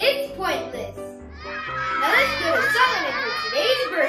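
A short spoken punchline from a boy, then from about a second and a half in, a crowd of many children's voices at once, a canned reaction to the joke, over light background music.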